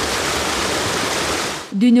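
Water rushing and churning down an irrigation canal, a steady noise that cuts off suddenly near the end.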